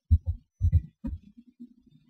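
Several soft, low thumps in quick succession, then a faint low hum.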